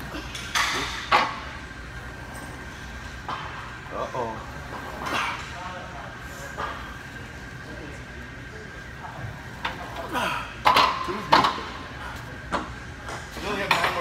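Iron weight plates being loaded onto a leg press sled, with a series of sharp metal clanks; the loudest two come about two-thirds of the way through.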